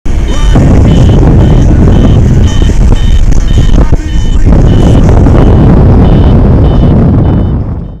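Heavy wind rushing over the camera microphone of a paraglider in flight, with a variometer beeping about twice a second at a steady high pitch, its signal that the glider is climbing. The sound fades out near the end.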